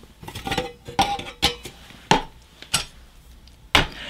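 Stainless steel camp stoves and a brass alcohol burner being handled and set down on a wooden workbench: about five sharp metal clinks and knocks, some with a short ring.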